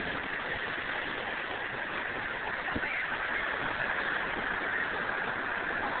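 Steady rushing outdoor background noise with no distinct events.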